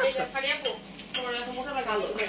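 Talking, with a brief sharp clink just after the start.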